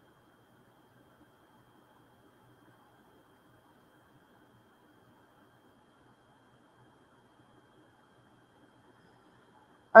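Near silence: only a faint, steady background hiss.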